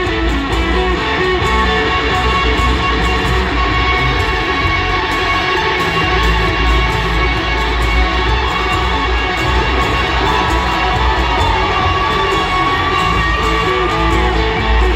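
Live acoustic string band playing an instrumental passage without vocals: fiddle, guitars and upright bass, heard through the arena's PA from the audience, with some crowd noise.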